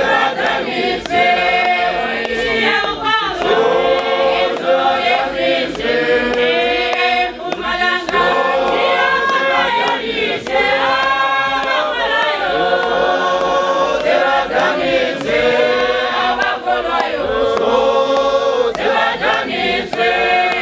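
A choir of women singing a hymn together, many voices blended in one continuous song of held, changing notes, picked up close on a handheld microphone.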